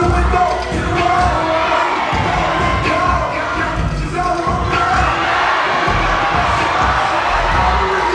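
Loud hip hop dance-mix music with a heavy bass beat, under an audience cheering and shouting.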